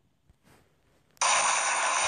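Near silence, then just over a second in a loud, steady hiss of video static starts abruptly.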